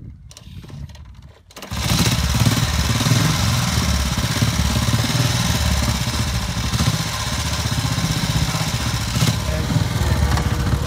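1932 New Imperial Model 23 motorcycle's single-cylinder engine being kick-started. It catches suddenly a little under two seconds in and then runs steadily and loudly.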